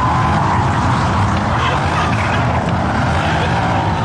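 Mercedes-AMG C-Class sedan driven hard in a slide, its engine revving high while the rear tyres spin and scrub on the pavement. The sound is loud and steady.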